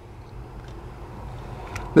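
Maxxair 5100K roof vent fan, fed 12 volts through a DC buck converter, running steadily in the background as a low, even whir.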